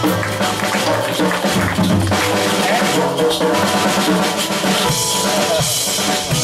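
Live band playing Brazilian jazz: the drum kit is prominent over bass, guitars and keyboard.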